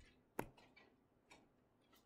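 Near silence broken by a sharp click a little under half a second in and a fainter click about a second later, small clicks from working the computer.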